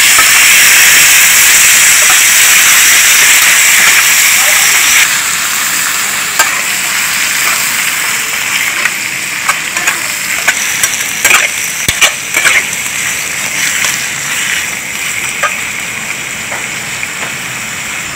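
Squid pieces sizzling in hot oil and garlic in a wok, with a loud hiss that drops off sharply about five seconds in and carries on softer. A metal spatula scrapes and clicks against the wok as the squid is stir-fried.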